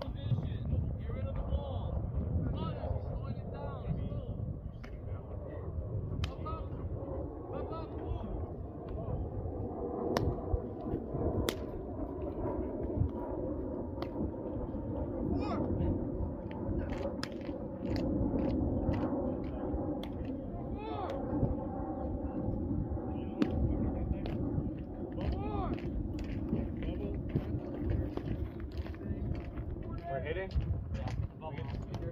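Open-air baseball field ambience under a steady low wind rumble on the microphone. Sharp pops sound again and again as baseballs are thrown and caught in leather gloves. Players call out faintly now and then from across the infield.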